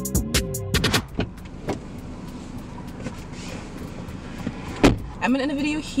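Background music with a beat that stops about a second in, then the steady low hum of a car's cabin, and a single sharp thump shortly before a woman starts talking near the end.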